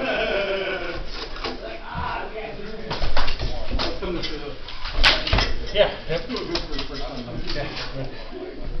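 Indistinct voices talking in the background, broken by a few sharp knocks, the loudest about three and five seconds in.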